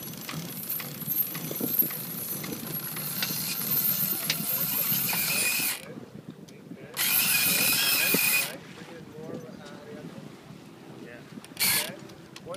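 Sailboat sheet winch being cranked with a winch handle, its pawls ratcheting in a rapid run of clicks as the sheet is trimmed in for a close reach. The cranking stops about six seconds in and comes again in a shorter, louder burst about a second later.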